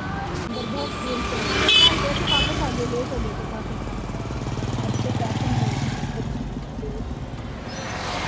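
Road traffic: a car and a motorbike engine passing, with a swelling low engine hum around the middle, and people's voices in the background. A short high-pitched vehicle horn beep sounds about two seconds in.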